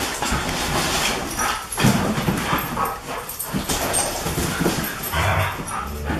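A husky and a Great Pyrenees cross playing together, making dog vocal sounds in short, irregular bursts throughout.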